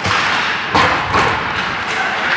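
Hockey players colliding with the rink boards and glass during a puck battle along the boards, giving two heavy thuds about three-quarters of a second and a second and a quarter in, the first the louder, over skate and stick noise on the ice.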